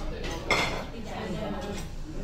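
Tableware clinking at a restaurant table, with one sharp, ringing clink about half a second in, over a steady murmur of diners' voices.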